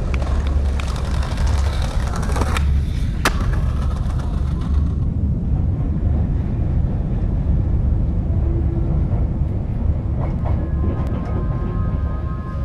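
Skateboard wheels rolling on concrete paving, then two sharp cracks about two-thirds of a second apart as the skater pops the board over litter bins and lands. After about five seconds this gives way to the steady low rumble of an underground train running through a tunnel.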